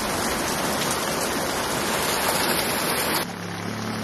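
Water of a shallow rocky stream running with a steady rush, cutting off suddenly about three seconds in.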